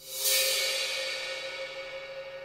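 A cymbal-like crash that swells in over the first quarter second and then slowly fades, over a steady held tone: a soundtrack transition effect between scenes.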